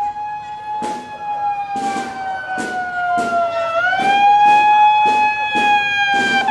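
A siren wailing, its pitch sinking slowly for about three seconds, then rising again and holding. A drum beats about once every 0.8 seconds underneath.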